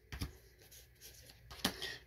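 Faint handling of Magic: The Gathering trading cards being flipped through by hand, with one short click about a quarter second in.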